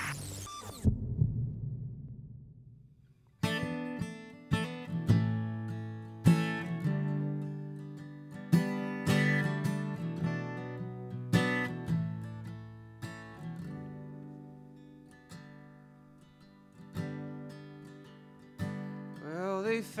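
Slow instrumental intro on acoustic guitar and upright bass: plucked and strummed notes that ring out, starting about three and a half seconds in, with singing beginning right at the end. Before it, the tail of a short intro sting ends with a thump just under a second in, then a few seconds of near quiet.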